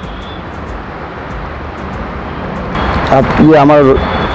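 Steady outdoor background noise, an even rush with no distinct events. A man begins speaking about three seconds in.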